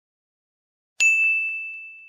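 Silence, then about a second in a single ding sound effect: one high, clear tone that starts sharply and fades slowly away.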